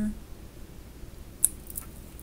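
A single sharp click about one and a half seconds in, with a couple of faint ticks just after, from hands handling cards. A low hum runs underneath.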